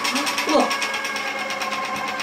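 Electric chocolate fondue fountain's motor running, a steady hum with a fast, even rattling pulse as it turns the auger that lifts the chocolate up the tower.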